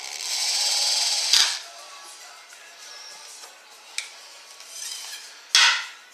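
Cordless drill spinning a copper tube mandrel to wind 18-gauge copper wire into a coil, running for about a second and a half and stopping with a sharp click. A further click follows, and a loud knock near the end.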